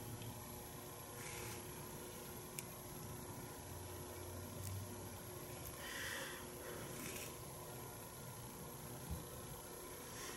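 Quiet room tone with faint handling noise: a few soft rustles and one light tick about two and a half seconds in.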